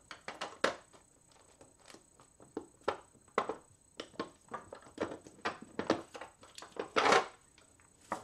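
Irregular light clicks and taps of craft supplies being handled on a tabletop, with one louder, longer sound about seven seconds in.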